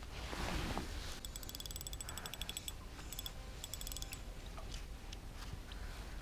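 A cast with an ultralight spinning rod, a soft swish in the first second, then the spinning reel being cranked to retrieve the lure, giving a rapid, even ticking in two runs: about a second and a half long, then a shorter one.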